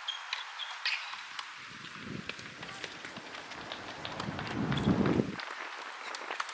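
Outdoor ambience at tennis courts: scattered faint ticks and knocks, with a low rumble that builds from about two seconds in, is loudest near the end and cuts off suddenly.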